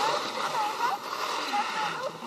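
Faint distant voices over a steady rushing hiss.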